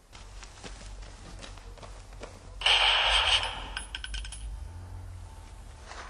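A gunshot burst about two and a half seconds in, lasting under a second.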